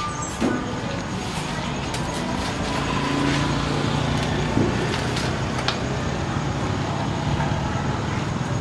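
Street traffic with a vehicle engine running nearby, its low hum growing stronger about three seconds in, and a few sharp clicks on top.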